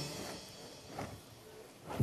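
Background music fading out in the first half second, then a quiet stretch with two faint short knocks, one about a second in and one near the end.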